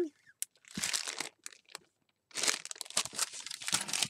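Clear plastic craft packaging crinkling as it is handled. A short rustle comes about a second in, then a longer spell of crinkling with small clicks from just past halfway.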